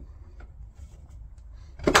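Two mitred MDF boards pushed together into a right-angle joint, with faint handling clicks and then a single sharp snap near the end as the Lamello Tenso connectors clip home.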